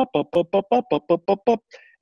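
A quick staccato melody of short, separate notes, about six a second, laying out a frenetic rhythmic motif. It stops about a second and a half in.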